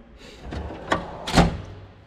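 Steel tool-cabinet drawer sliding shut on its runners, with a lighter knock and then a bang as it closes about one and a half seconds in.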